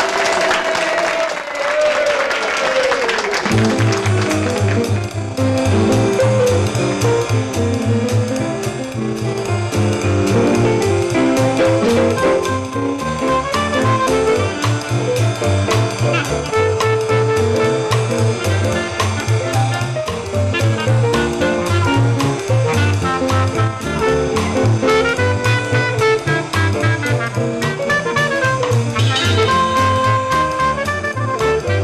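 Studio audience applauding for the first few seconds as the band starts, then a small jazz band playing swing with a steady beat: clarinet lead over string bass and piano.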